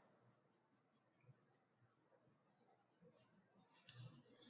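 Very faint scratching of a felt-tip permanent marker on paper as it colours in a small dot, in short dabbing strokes mostly in the first second or so.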